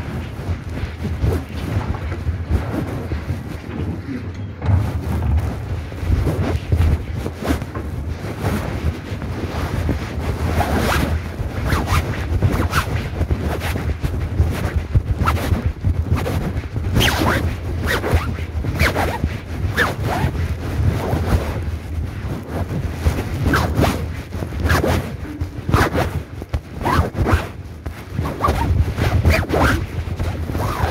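Wind buffeting a microphone as a steady low rumble, with a run of short rasping scrapes and rustles close to the microphone that grow more frequent from about ten seconds in.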